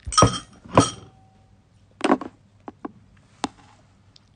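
Ceramic bowl clinking: two sharp strikes in the first second, each ringing briefly, then a duller knock about two seconds in and three lighter clicks.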